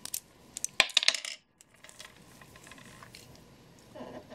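Brass clock movement clinking as it is handled and turned over: a quick cluster of sharp metallic clicks in the first second and a half, then only faint handling.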